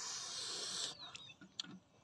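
A breathy rush of air through pursed lips, about a second long, followed by a few light clicks of a metal spoon against the sauce bowl.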